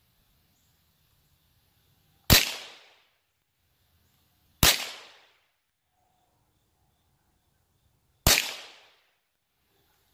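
Three single gunshots from a Mossberg Blaze 47 .22 rifle, fired a few seconds apart, the second about two and a half seconds after the first and the third about three and a half seconds later. Each is a sharp crack with a short fading echo.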